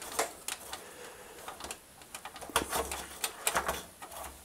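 Rustling and scattered light clicks of heater wires and a rubber grommet being handled and fed through a hole in a tumble dryer's sheet-metal back panel, busier in the second half.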